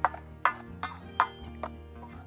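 A metal spoon knocking against a stainless steel bowl while stirring a kefir soup: five sharp ticks a little under half a second apart. Background music plays under it.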